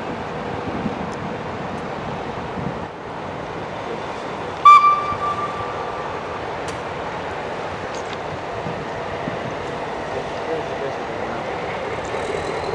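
Horn of a Finnish Vemppu diesel locomotive giving one short, loud blast about five seconds in, over the steady low running of the locomotive as the train creeps through the yard.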